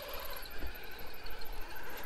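Axial Capra RC rock crawler's sensored brushless motor and geared drivetrain running faintly as the truck crawls over rock, with a thin steady whine.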